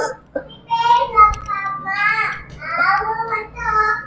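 A high-pitched voice wailing without words in about four drawn-out, sing-song cries that rise and fall.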